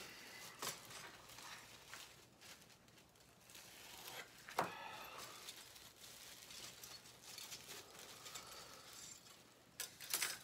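Faint rustling and small clicks of a plastic parts bag and model-kit parts trees being handled, with one sharper click about four and a half seconds in.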